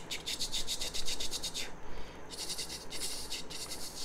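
Pen stylus scratching on a drawing tablet in quick, short repeated strokes, drawing dashes. The strokes come in two runs with a brief pause just before halfway.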